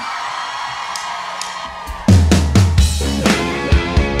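Live rock band with drum kit, bass and electric guitar crashing in together about two seconds in, after a quieter stretch of hazy noise with a faint held tone. The band then plays on loudly with steady drum hits.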